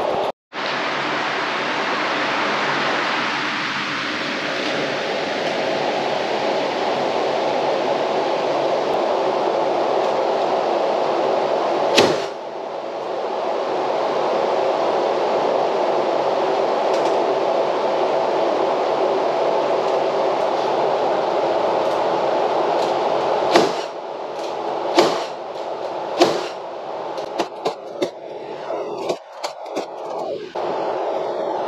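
Electric floor fan running steadily close by, blowing a loud even rush of air. A sharp knock about twelve seconds in, and a run of sharp knocks and clacks in the last several seconds.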